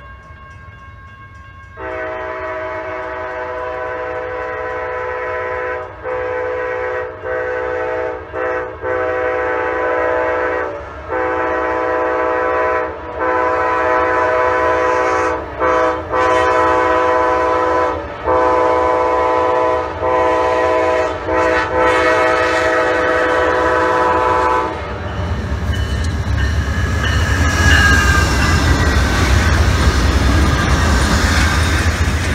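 Amtrak GE P40DC locomotive's multi-note air horn sounding a long series of blasts, most of them long with brief breaks and a few short, growing louder over about 23 seconds. Then the horn stops and the lead diesel locomotives pass close by with a heavy engine rumble and wheel noise on the rails.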